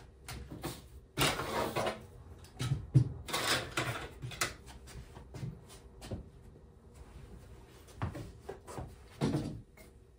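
Rustling and clatter of barber tools, cords and bottles being picked up and set down on a tabletop, in irregular bursts with a few sharp knocks.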